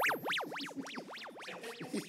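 Electronic music: a synthesizer tone sweeping quickly up and down in pitch, about three sweeps a second, fading and narrowing as the track winds down.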